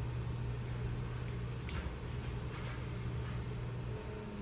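A steady low hum, with a few faint clicks now and then.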